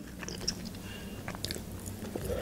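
Soft eating sounds: a few faint clicks as a woman chews and bites into a slice of pepperoni pizza.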